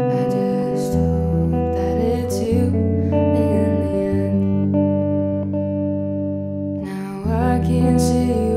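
A woman singing a slow song to her own guitar playing, with long held low notes underneath; the voice drops back in the middle and comes in again strongly about seven seconds in.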